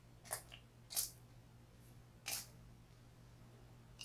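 Three short, faint hissing spritzes from the fine-mist pump sprayer of a Physicians Formula Butter Believe It makeup setting spray, misted onto the face. The sprayer gives a fine, even mist with no big droplets.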